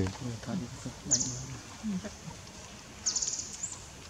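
A man's low voice speaking softly in the first two seconds. There are a few very short, high chirps about a second in and again near the end.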